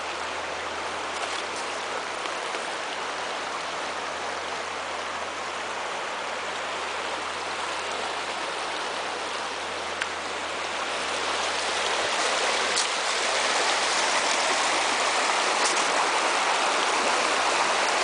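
Small rocky woodland brook running, a steady rush of water that grows louder about halfway through as a riffle of white water over the stones comes close.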